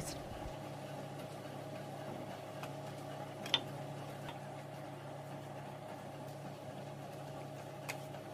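A steady low background hum, with one faint click about three and a half seconds in.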